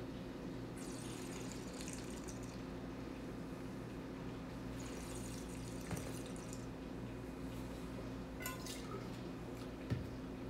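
A sip of white wine drawn in and worked around the mouth, with airy slurping twice, over a steady low electrical hum. A soft knock about six seconds in as the glass is set down on the table, and another just before the end.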